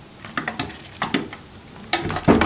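A baby chipmunk biting into pomegranate arils: short bursts of wet crackling crunches, a few times.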